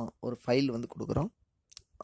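A man speaking for the first second or so, then a short pause broken by one brief click near the end.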